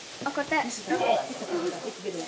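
Quiet, indistinct voices talking in short snatches over a faint steady hiss of room noise.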